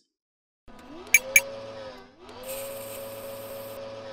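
Intro logo sound effect: a machine-like whirring tone that rises in pitch and holds steady, dips, then rises and holds again, with two sharp clicks about a second in.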